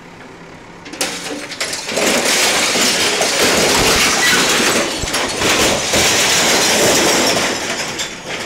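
A bulldozer demolishing a house: loud crashing and clattering of breaking walls and falling rubble, with many sharp knocks. It starts about a second in, grows into a continuous din, and eases off near the end.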